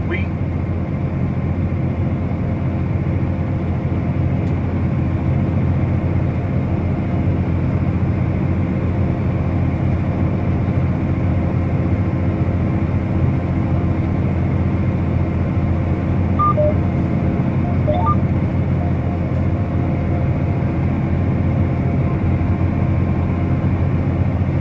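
John Deere tractor's diesel engine running steadily, heard as an even drone from inside the closed cab while working the field.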